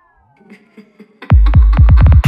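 Minimal techno break: falling synth glides trail off into near-quiet with a few sparse blips. About 1.3 s in, the beat drops back in hard with a fast run of deep kick-drum hits and bass.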